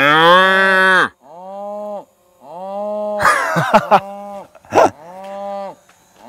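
Highland cattle mooing repeatedly: about five drawn-out, steady-pitched moos, the first and loudest at the very start, with a harsher, noisier call a little past halfway.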